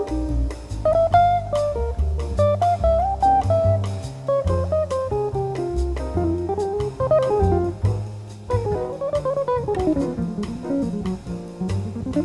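Jazz guitar soloing in quick single-note lines over a bass line and drums, with a long run that falls and then climbs again in the last few seconds.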